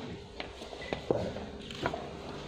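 A few light clicks and taps, three sharp ones about 0.7 s apart, with a faint brief high tone between them.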